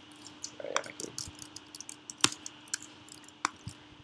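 Sparse, irregular keystrokes and clicks on a computer keyboard and mouse while code is edited, with one sharper click about two seconds in.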